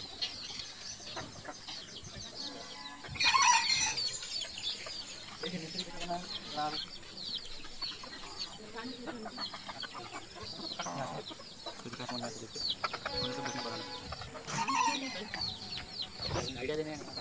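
Chickens clucking, with a louder rooster-like call about three seconds in and another near the end, over many short high chirps.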